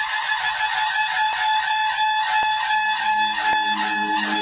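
Intro sound effect: a steady, buzzy band of sound with a few fixed tones and a faint tick about once a second. A low held musical note joins about three seconds in.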